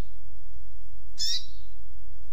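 Double-collared seedeater (coleiro) giving a single short, bright note about a second in, part of a 'tui tuipia' song used as a training recording, with a faint shorter note at the start. A steady low hum runs underneath.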